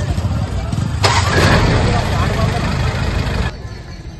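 A lorry engine running close by, with a loud rushing rise about a second in. It cuts off abruptly about three and a half seconds in.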